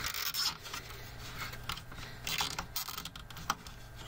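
Nylon cable tie being pulled through its lock around a wiring bundle, giving irregular short scratchy zips, with fingers rubbing on the plastic and wires.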